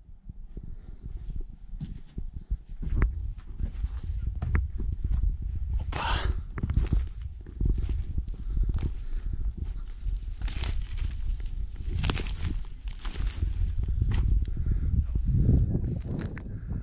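Footsteps crunching and dry grass and weed stems brushing and crackling against legs as someone climbs a slope and walks through a dry field, with louder rustling bursts about six seconds in and again a few seconds later. A steady low rumble of wind on the microphone runs underneath.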